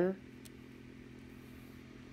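A steady low hum, with one faint click about half a second in.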